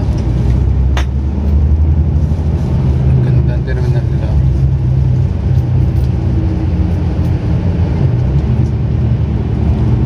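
A road vehicle's engine and road noise, a steady low rumble as it drives slowly. A sharp click comes about a second in.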